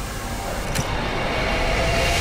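Whoosh sound effect of a logo animation: a noisy rush that swells steadily louder, with a short click a little under a second in.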